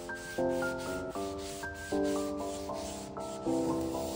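A cloth towel rubbed briskly back and forth on a wooden door panel, about four strokes a second. Gentle instrumental background music with changing notes plays over it and is the loudest sound.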